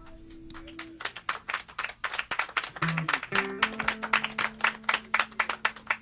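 A small audience clapping as the song ends, with faint held instrument notes sounding beneath the applause from about three seconds in.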